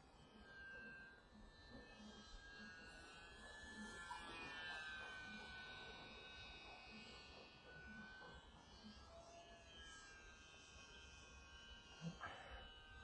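Faint whine of a Hobbyzone Champ S+ RC plane's electric motor and propeller in flight, its pitch slowly gliding up and down as it passes, loudest about four to five seconds in.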